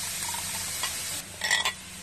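Chopped onion, garlic and bell pepper sizzling in oil in a frying pan while a metal spoon stirs them. The sizzle fades about halfway through, and a few short metal scrapes follow near the end.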